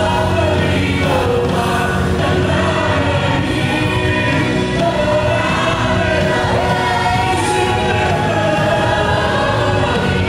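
Live Christian worship song: several voices singing together over a band with electric bass guitar and drums, played steadily throughout.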